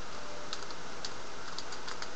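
3x3 Rubik's cube being turned fast in a speedsolve: a run of light, irregular plastic clicks as its layers snap round, bunched together near the end, over a steady hiss.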